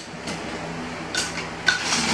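Loose plastic Lego bricks being rummaged and handled on a table: two short rustling clatters, about a second in and near the end, over a faint low steady hum.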